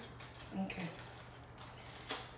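Faint rustling and crinkling of aluminium foil as it is handled, with a soft spoken "okay" about half a second in, over a low steady hum.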